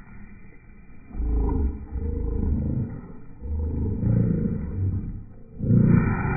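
A dog growling in play at the spray from a garden hose: low, rough growls in several long bouts, starting about a second in, with a short break just before the end.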